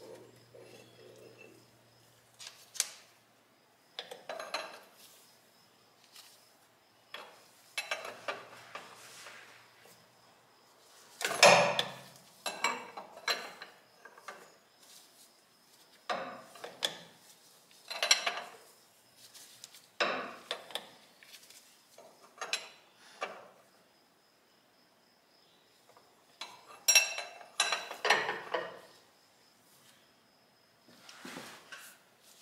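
Steel wrench clinking and clanking against metal fuel-line fittings on a diesel engine, in irregular bursts as a fitting is worked on. The loudest clank comes about a third of the way in, with a quick run of clinks near the end.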